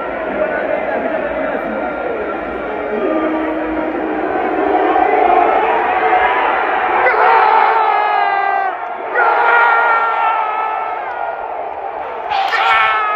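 Large stadium football crowd: a steady din that swells, then breaks into loud cheering and shouting from fans close by, starting about seven seconds in, celebrating a goal.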